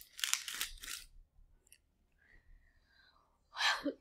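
Foil chip packet crinkling and tearing open in the first second, then quiet, with a short breathy burst near the end.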